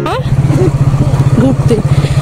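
Motorcycle engine running steadily with a fast, even pulse as the bike rides along a road. A person's voice is heard briefly over it.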